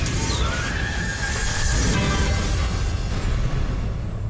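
Game-show round sting: electronic music with whooshing sci-fi sound effects over a deep rumble, a tone sweeping up and then slowly back down in the first half.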